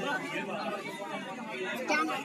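Several people talking over one another: indistinct chatter of voices.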